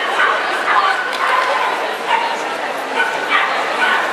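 Small agility dog barking in short, high-pitched yaps, repeated many times as it runs the course.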